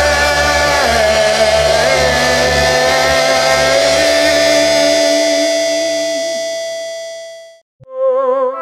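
A rock song from the soundtrack ends on a long held chord, a sustained high note over a bass line, and fades away to silence about seven and a half seconds in. After a brief gap, a new tune with wavering notes starts right at the end.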